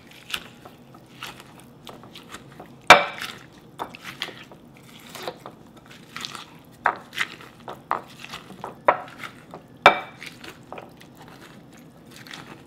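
Wooden pestle pounding pomegranate seeds in a glass bowl, crushing their tough skins: a string of irregular wet, squishy thuds that sound like walking in the mud, with two louder, sharper knocks, about three seconds in and near the end.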